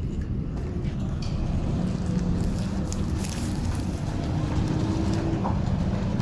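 Steady low rumble of a motor vehicle engine running.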